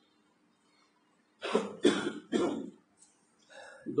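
A person coughs three times in quick succession, starting about a second and a half in.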